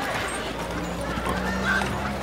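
Busy street ambience: crowd chatter mixed with horses' hooves clopping. A low steady drone sits under it, with a steady tone joining about half a second in.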